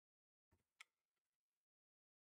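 Near silence, broken once by a faint, short click about a second in, trailed by a few softer ticks.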